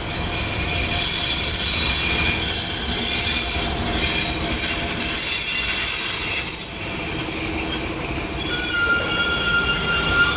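A freight train of four-axle cement wagons rolls slowly past behind an ITL Blue Tiger diesel locomotive, its wheels giving a steady high-pitched squeal over the low rumble of the train. A second, lower squeal joins in near the end.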